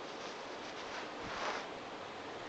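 Steady hiss of an electric fan running, with a brief faint sound about one and a half seconds in.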